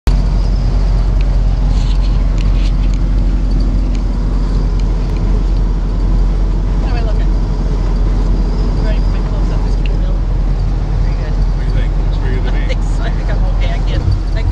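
Steady engine and road drone of a vintage car under way, heard from inside its cabin.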